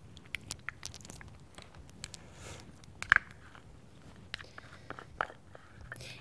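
Scattered small clicks and taps from a powder brush and powder compact being handled, with the sharpest click about three seconds in.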